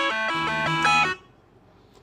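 A melody of held, steady notes, about four notes a second, that cuts off suddenly about a second in, leaving near silence.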